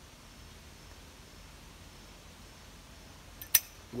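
Quiet, faint steady background while a tobacco pipe is puffed, broken by one sharp click about three and a half seconds in, just before the smoke is let out.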